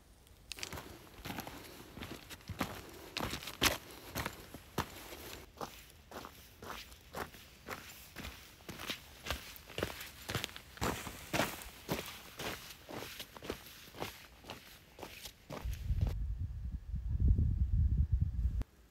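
Hiking boots crunching on a loose gravel and stone mountain trail, steady walking steps about two a second. Near the end the steps stop and a loud low rumble takes over.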